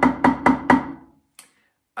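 Drumsticks playing evenly spaced loud strokes on a rubber practice pad set on a snare drum, about four strokes a second, stopping just under a second in.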